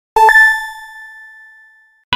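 A chime sound effect for an animated logo: two quick bell-like dings, the second pitched higher, ringing out and fading over about a second and a half.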